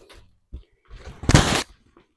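Handling noises: a couple of light knocks and clicks, then a louder scraping rustle about a second in that lasts under a second.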